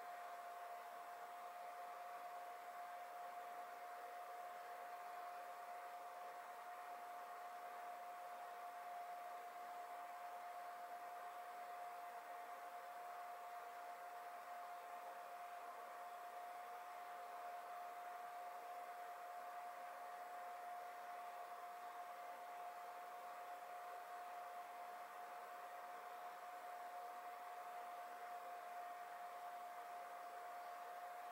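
Faint steady hiss with a single unchanging mid-pitched hum or tone, and nothing else happening.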